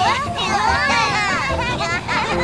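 Several high, childlike cartoon voices calling out over each other, with background music underneath.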